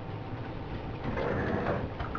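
Steady low background noise of a small room, with no distinct sound standing out.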